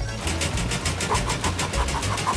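Cartoon machine sound effect: a fast mechanical rattle of about six beats a second as a ring-shaped test rig spins, with a short repeating electronic bleep joining about a second in, over background music with a steady bass line.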